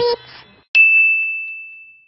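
The last sung note of an intro jingle cuts off, then a single bright, high ding sound effect starts sharply and fades away over about a second.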